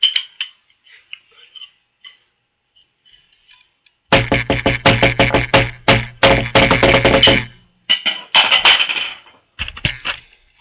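A fast run of drum strikes with a low pitched ring under them, starting about four seconds in, followed by two shorter clusters of hits near the end.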